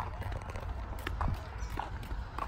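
Footsteps on an asphalt path, sharp irregular taps about twice a second, over a steady low rumble.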